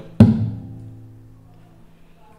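Acoustic guitar body slapped once with the wrist, a percussive thump imitating a kick drum, with the strings of an A minor 7 chord ringing on and fading away.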